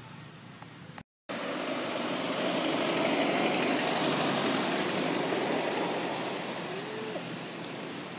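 A passing vehicle: after a brief dropout about a second in, a loud even noise swells for a couple of seconds and then slowly fades.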